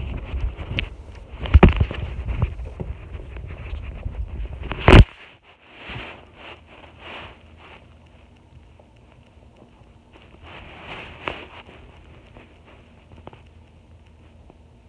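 Handling noise on the recording device's microphone: rough rubbing and bumps for about five seconds, ending in one sharp knock, then only a few faint rustles.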